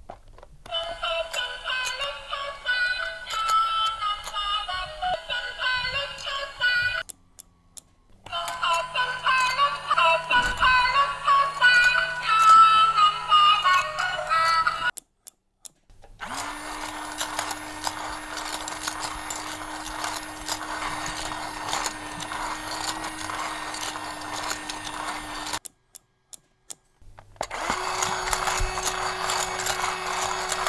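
Electronic toy music playing a quick, high-pitched melody, in two takes with a brief gap between. Then a small electric motor runs with a steady whine and buzzing, and after another short gap it runs again at a slightly higher pitch.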